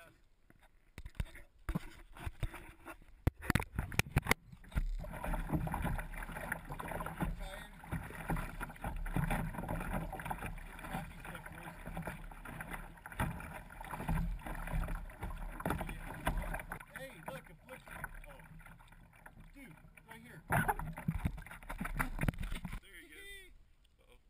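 Water splashing and sloshing over a paddled kayak's bow and against the camera's waterproof housing, heard muffled, in uneven surges with a heavy low rumble. A run of sharp knocks comes in the first few seconds, and the water noise falls away about a second before the end.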